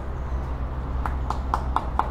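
A quick run of about five sharp clicks about a second in, over a steady low rumble.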